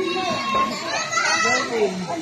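Several people's voices overlapping, chattering and calling out as swimmers play in a pool; a voice starts to say "¡Muy bien!" near the end.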